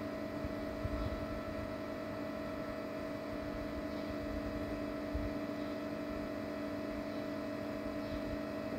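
Household electric water-pump motor, switched on by its automatic controller, running with a steady hum.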